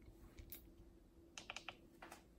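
Near silence: faint room hum with a few soft clicks, one about half a second in and a quick run of about four clicks near the end.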